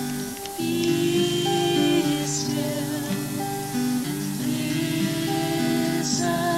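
Slow, gentle music: voices singing long held notes over a soft instrumental accompaniment.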